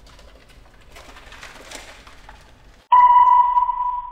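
A faint hissy rustle, then about three seconds in a sudden loud, high ringing tone strikes, like a sonar ping, and fades away over about a second and a half: a horror-trailer sound-effect sting on the cut to black.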